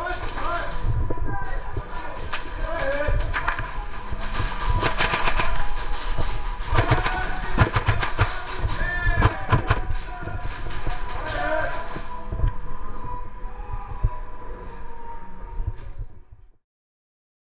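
Airsoft guns firing in repeated bursts, thickest in the middle, over the calls and shouts of other players.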